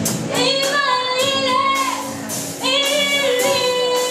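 A girl singing into a microphone, backed by a live band: two long sung phrases on held notes, with a short break about two and a half seconds in.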